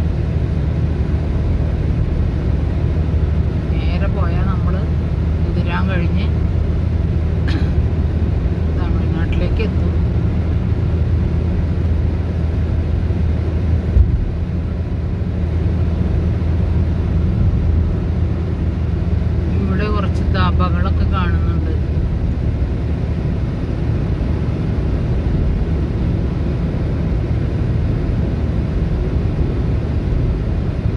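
Steady low rumble of a car's engine and tyres heard from inside the cabin while cruising on a highway, with a single low thump about halfway through.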